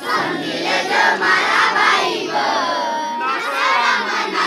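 A large group of voices, children's among them, singing loudly together in chorus as part of a song, with one note held briefly about three seconds in.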